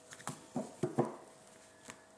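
A deck of tarot cards being shuffled by hand: about five short card slaps and taps spread over two seconds.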